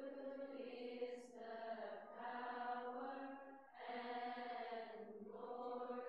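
Coptic Orthodox Pascha chant sung by voices as long held notes, with short breaks between phrases about every one and a half to two seconds.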